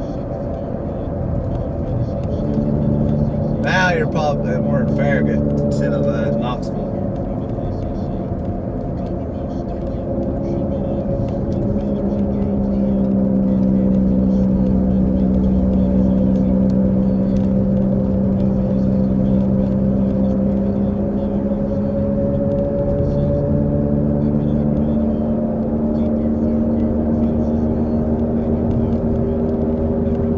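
Car cabin noise while driving: a steady drone with several held tones that shift slowly, and a brief cluster of sharp clicks or rattles about four to six seconds in.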